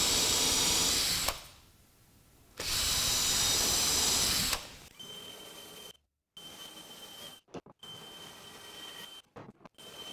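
Cordless drill running under load as it bores pilot holes through a plywood template, in two steady runs of about two seconds each with a short pause between. After about five seconds the sound drops to a much fainter level with a thin high whine.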